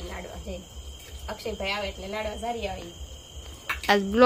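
A steady high-pitched insect trill runs without a break, under quiet talking in a woman's voice.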